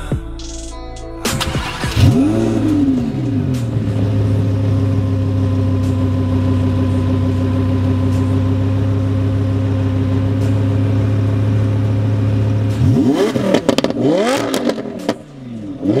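Lamborghini Huracan LP610-4's naturally aspirated V10 breathing through an Fi Exhaust valvetronic catback. It starts about a second in with a quick rev flare that rises and falls, then settles into a steady idle. Near the end come several short throttle blips, each rising and falling.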